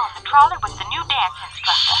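Speech: a woman's voice talking over a telephone line, with a faint low hum underneath.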